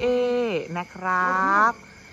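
A man's voice speaking in two long drawn-out, sing-song phrases. Speech only.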